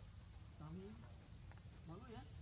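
Steady high-pitched drone of forest insects, one unbroken tone, with faint voices briefly underneath.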